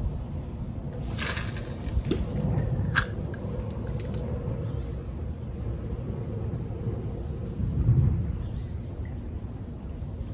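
Outdoor rumble of wind buffeting the microphone, steady throughout and swelling briefly near the end. A short hiss comes about a second in, followed by a couple of sharp clicks.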